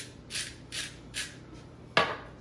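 Hand salt grinder twisted over a glass, giving three short gritty crunches about half a second apart, then a sharp knock near the end.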